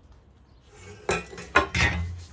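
Scythe blade being sharpened: a hand sharpener scraped along the steel edge in three quick strokes, starting about halfway through.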